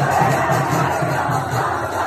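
Music with a fast, steady bass beat, and a large crowd shouting along to it.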